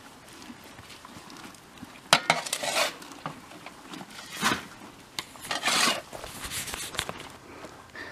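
A steel shovel scraping and clanking as dirt is shoveled into a wheelbarrow, in a few separate strokes: a sharp clank about two seconds in, then scrapes and dumps near the middle.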